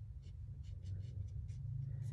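Small paintbrush stroking and dabbing paint onto canvas paper: a run of short, faint scratchy strokes, over a steady low hum.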